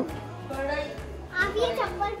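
A young girl speaking over background music.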